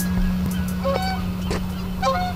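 A few short bird calls over a steady low hum.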